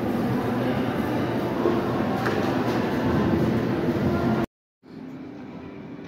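Steady loud rumbling background noise that cuts off abruptly about four and a half seconds in, leaving a quieter background.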